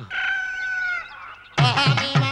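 A rooster crowing once: a single held call that drops in pitch at its end. About a second and a half in, film music with drums starts.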